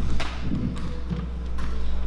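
Handheld stage microphone being handled and pulled off its stand, giving a few dull thumps and knocks, the sharpest just after the start. A steady low electrical hum runs under it.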